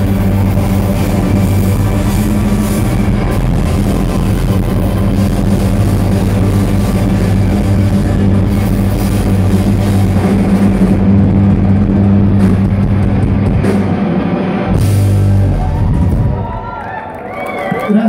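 Live rock band playing loudly, with heavy bass, drums and guitar over a held low note. Near the end the band drops back and a voice comes in.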